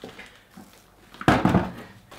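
A single dull thump about a second in, fading over half a second, from handling the 3D printer's plastic casing.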